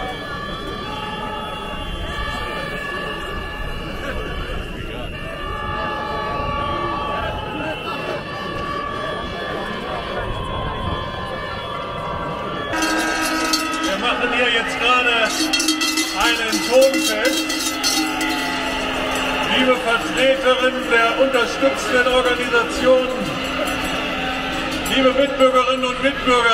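A protest crowd with horns blowing long, steady notes at several pitches over one another. About halfway through, the sound changes to a crowd shouting and cheering, with loud peaks and a low steady horn note beneath.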